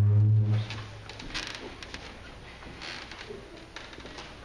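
Indoor room ambience: a loud, low, steady hum lasting under a second at the start, then quiet room noise with a few faint knocks.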